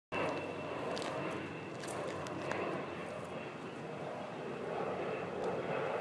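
Steady outdoor engine drone, like an aircraft passing, swelling slightly, with a few faint clicks.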